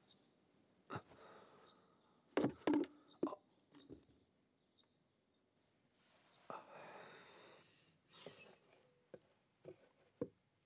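Foley-style movement sounds of a man getting up from a sofa: a few sharp knocks and thumps, the loudest about two and a half seconds in, then a soft rustle of a blanket being pushed aside about six to eight seconds in.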